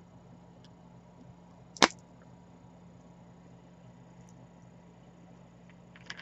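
A single sharp click about two seconds in, much louder than anything else, over a faint steady low hum.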